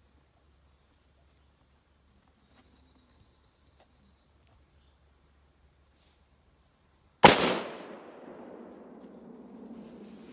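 A single deer-rifle shot about seven seconds in, sharp and very loud, its report echoing and rolling off through the woods for a couple of seconds after.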